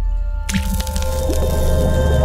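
Intro logo music over a deep steady bass, with a sudden wet, splashing sound effect coming in about half a second in.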